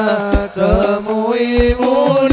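Sholawat devotional singing by a male voice with hadroh frame-drum accompaniment: a melismatic vocal line over a held tone, with a few deep drum strokes, two of them close together near the end.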